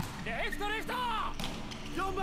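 Dialogue from a subtitled anime episode: high-pitched Japanese voices speaking and calling out, a little quieter than the viewer's own talk, with a sharp click at the very start.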